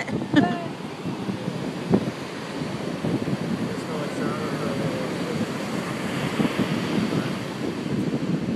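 Ocean surf washing on the beach, with wind buffeting the microphone.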